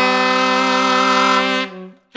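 A wind ensemble with saxophones holds a dense chord of several sustained notes. It fades about a second and a half in and breaks off just before the end.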